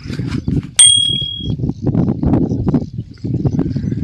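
A single bright ding, a bell-like notification sound effect from a subscribe-button animation, rings out about a second in and fades within about half a second. Under it there is rough, low rustling and handling noise.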